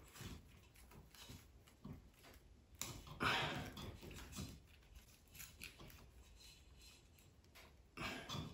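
Faint small clicks and rustles of fingers handling stranded fixture wire and working it into a push-in wire connector, with a slightly louder rustle about three seconds in.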